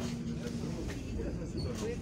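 Low steady rumble of a stopped city bus's engine idling, heard from inside the cabin, with people's voices talking over it near the end.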